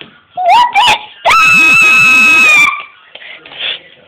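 A child's voice gives a short rising yelp, then a long, high, steady scream lasting about a second and a half: a play-acted scream of fright.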